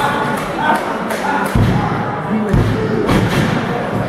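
Referee's hand slapping the wrestling ring mat twice, about a second apart, counting a pinfall, over crowd voices.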